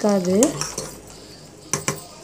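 A metal slotted ladle stirring a watery mixture in a pressure cooker pot, then two sharp clicks of the ladle against the pot near the end.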